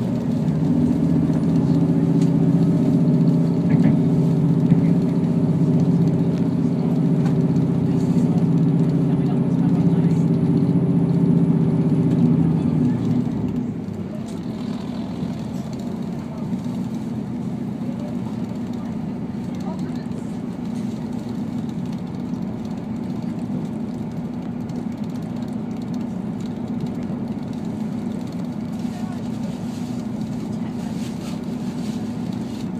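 Diesel passenger railcar heard from inside the cabin: a loud, steady engine drone with a faint high whine, which drops away about 13 seconds in as power is shut off for the approach to the station. After that a quieter, even rumble of the train running on the track remains.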